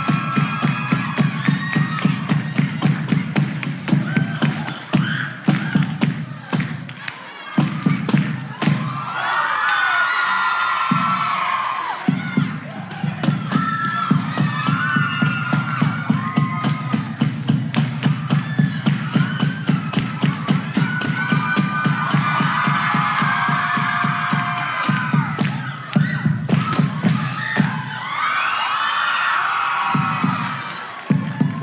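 Somali dance music with a fast, steady beat and rapid hand clapping, while a crowd cheers and whoops in high-pitched swells several times. The beat breaks off briefly about a third of the way in.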